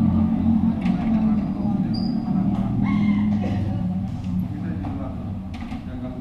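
Indistinct voices of people talking nearby, with a few faint clicks, fading somewhat toward the end.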